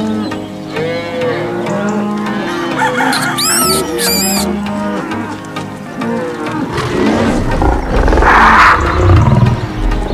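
Sound-effect cattle mooing, several moos over background music, with thin high chirps a few seconds in. From about three-quarters of the way through come louder, rougher roars.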